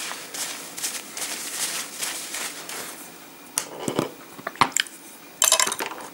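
Small plastic paint pots being handled on a desk: a few light clicks and knocks, with a short, louder clatter near the end.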